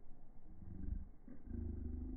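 Uneven low rumble of wind on the microphone, swelling twice.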